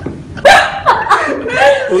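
A small group of people laughing, with short exclamations mixed in; the laughter starts loudly about half a second in.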